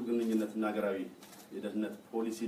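Speech only: a man speaking Amharic into podium microphones.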